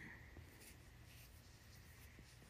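Near silence: faint rubbing of fingertips on the face close to the phone's microphone, with a few tiny ticks.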